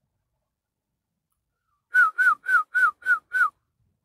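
A quick run of six short, loud whistled notes, each sliding slightly down in pitch, at about four a second, starting about halfway through and lasting about a second and a half.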